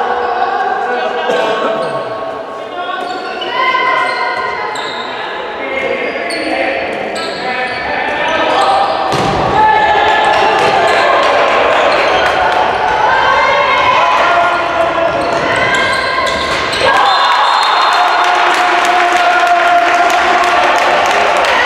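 A handball bouncing on a sports-hall court during play, with players' voices calling over it.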